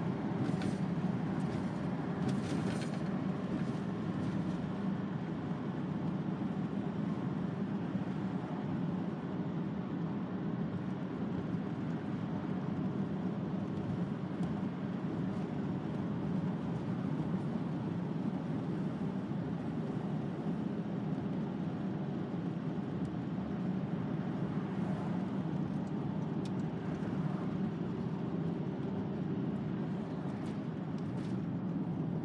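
Steady cabin noise of a VW T5 Transporter van cruising at constant speed: engine drone and tyre and road rumble, with a low hum and no change in pace.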